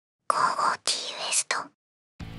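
A short whispered voice: three breathy bursts, the last one brief.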